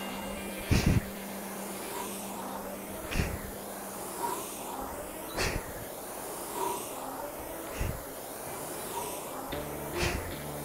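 Concept2 rowing machine's air-resistance flywheel whooshing with each drive stroke, one stroke about every two and a half seconds at a steady 26 strokes per minute.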